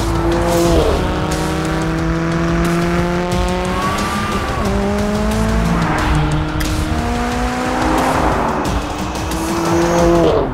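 McLaren Sports Series twin-turbo V8 under hard acceleration: the revs climb in long pulls, with a quick gear change partway through, and fall sharply near the end.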